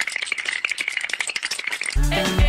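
A fast, even rattle of sharp clicks, many per second, with a steady high tone running underneath.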